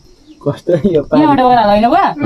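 A person's voice: brief sounds about half a second in, then one long drawn-out wavering vocal note, loud and close.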